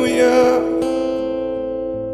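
Guitar chords strummed and left ringing in a slow ballad accompaniment. The tail of a sung note fades in the first half second, a fresh strum comes just after, and the chord then slowly dies away.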